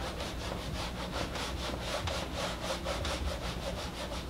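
Whiteboard eraser rubbing across a whiteboard in quick, even back-and-forth strokes as the writing is wiped off.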